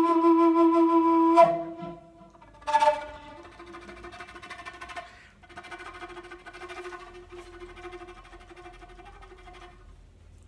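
Wooden end-blown flute holding a long low note that breaks off about a second and a half in. A short louder note follows near three seconds, then a much softer held tone at the same pitch carries on until just before the end.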